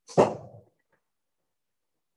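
A single short, sharp sound right at the start, loud and fading out within about half a second.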